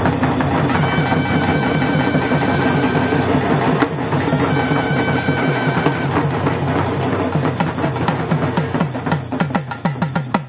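Tamil folk music for a karagattam dance: fast, dense drumming on large stick-beaten barrel drums, with held high notes over it in stretches. Near the end the drumming thins into separate, spaced strokes.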